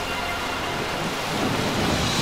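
Thunderstorm sound effect in a rock song's recording: steady rain hiss with low thunder rumble that swells in the second half.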